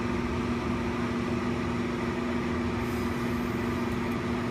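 Steady machine hum with two level tones, from the biosafety cabinet's blower and the vacuum aspirator running while culture medium is drawn off a flask.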